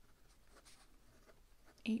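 Fountain pen nib moving faintly across paper in short strokes as a word is written: a Pilot Custom 823 with a 14k fine nib.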